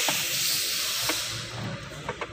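A steady hiss that fades out about one and a half seconds in, with a single light click about a second in.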